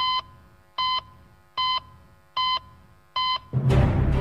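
Heart-monitor beep sound effect: five short, identical electronic beeps at one pitch, a little under a second apart. Music comes in loudly just before the end.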